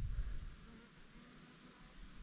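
Faint insect chirping: a thin, high pulse repeating evenly about four times a second.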